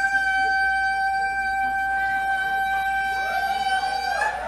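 A single high-pitched tone held very steadily for about four seconds, sliding briefly up into pitch at its start and cutting off at the end.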